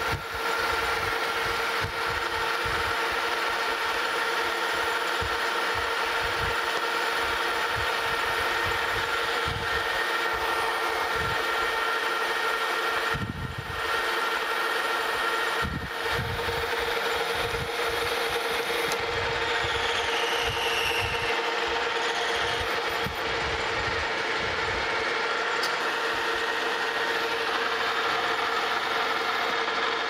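Metal lathe running steadily with a constant whine while a carbide boring bar cuts inside a spinning brass workpiece. The sound dips briefly twice, about halfway through.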